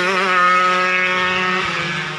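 Yamaha F1ZR two-stroke racing motorcycle engine held at high revs, its pitch wavering at first and then steady, fading away near the end.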